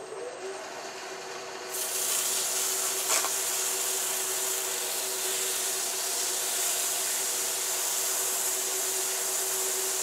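A wood lathe spinning a maple ball with a steady hum. Sandpaper held against the turning ball makes an even hiss that starts about two seconds in, raising fine dust as it cuts.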